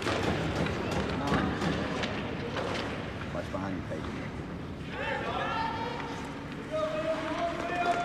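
Sounds of an ice hockey game in a rink: indistinct shouting voices with scattered clacks of sticks and skates on the ice, and one long drawn-out shout near the end.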